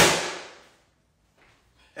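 A single sharp bang or smack at the start that fades away within about half a second.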